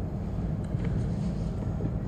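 Steady low rumble of background room noise, with a couple of faint paper-handling ticks.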